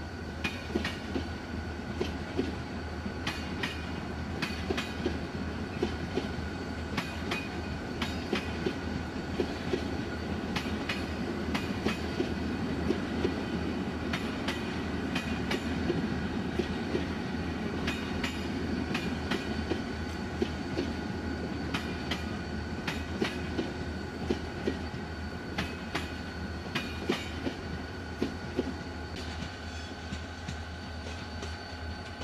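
Passenger coaches of an express train rolling past. The wheels click over rail joints above a continuous rumble that swells in the middle and eases toward the end.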